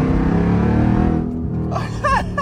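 Supercharged 6.2-litre Hemi V8 of a Jeep Grand Cherokee Trackhawk under hard acceleration, heard from inside the cabin: the revs climb just before, then a loud engine note with several droning tones holds for about a second and a half and eases off.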